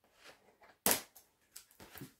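Scissors snipping open packaging: one sharp snap about a second in, then a few lighter clicks.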